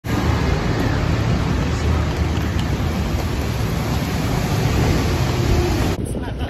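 Loud, steady rushing noise with a heavy low rumble, from traffic on a rain-wet city street. It ends abruptly.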